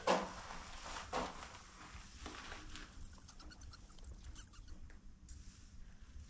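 Bat clinging to a concrete tunnel wall giving faint, rapid, very high-pitched chittering in short runs, about two seconds in and again about four seconds in. Two soft knocks come in the first second.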